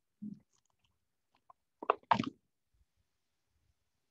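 Lab equipment being handled while a force sensor is fitted: a soft low thump just after the start, then two sharp knocks close together about two seconds in.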